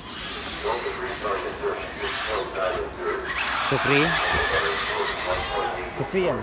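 Small two-stroke nitro engines of 1/8-scale RC buggies buzzing and revving as they race around the track, swelling louder about halfway through, with people talking in the background.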